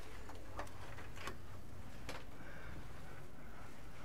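Steady low background hum with three or four soft, short clicks at irregular spacing.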